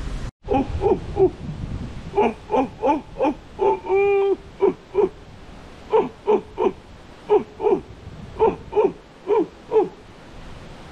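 A series of short hooting animal calls, mostly in twos and threes, with one longer held note about four seconds in.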